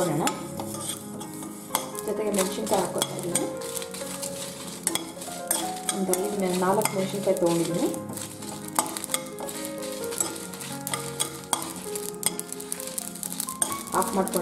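A metal spoon stirs and scrapes coriander seeds, cumin seeds and dried red chillies roasting in a nonstick kadai. The seeds rattle and tick against the pan in many quick sharp clicks, with a light sizzle.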